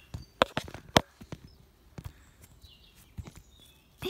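A handful of sharp taps and clicks, bunched in the first second and then a few fainter ones: a Schleich plastic toy horse's hooves being tapped along the ground as it is made to walk.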